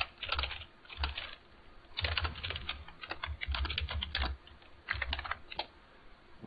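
Computer keyboard being typed on in quick runs of keystrokes with short pauses between them, as a terminal command is written and entered.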